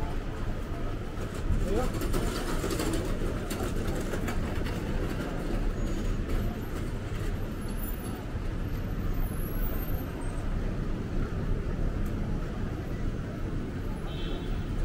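Busy street ambience: a steady low traffic rumble under indistinct chatter of passers-by.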